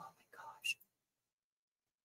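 A woman's voice trailing off in a faint, breathy, half-whispered word for under a second, followed by dead silence.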